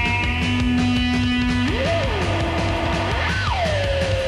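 Fast psychobilly rock music over a steady, driving drum and bass beat. A lead line holds one long note, then from about two seconds in swoops up and down in pitch several times.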